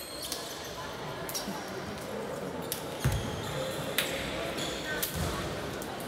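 Basketballs bouncing on a hardwood court in a large sports hall: several separate thuds and sharp knocks, with short high squeaks in between and a background of voices across the hall.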